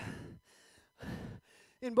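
A person breathing out heavily twice, about a second apart, catching their breath after exertion; a spoken word begins near the end.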